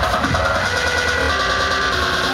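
Loud techno played over a club sound system: a pulsing kick drum under sustained synth notes, the beat thinning out in the second half.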